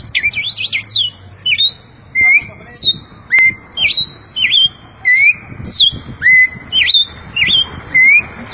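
A man imitating a cardinal's song by mouth. He gives a repeating series of short, high whistled notes, about two a second, some sliding down and some sliding up.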